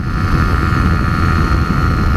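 Suzuki GSX-R125's single-cylinder engine held flat out in sixth gear, climbing uphill at about 77 mph: a steady, unchanging high engine note at the top of its rev range. Heavy wind noise rumbles on the microphone underneath it.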